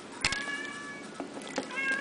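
Small metal swivel clasp being unhooked from a hitch fastener: a sharp click about a quarter second in, followed by a thin high ringing that lasts about a second. Another softer click and ring comes near the end.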